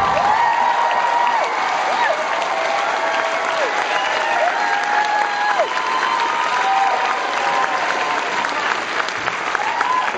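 Concert audience applauding and cheering right after a song ends, with long whoops sliding up and down over the clapping.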